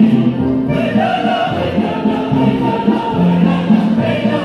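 Stage music accompanying a folk-style dance, with a choir singing.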